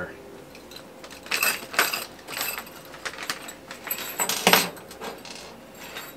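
Metal hand tools clinking and jangling together as they are rummaged through in a tool bag, in several clusters of bright metallic clicks, the loudest about four and a half seconds in.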